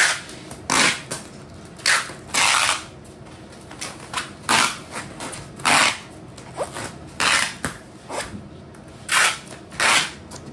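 Packing tape being pulled off a handheld tape dispenser gun in quick, rasping rips, about nine pulls at uneven intervals, one drawn out longer than the rest, as the tape is laid onto bubble wrap.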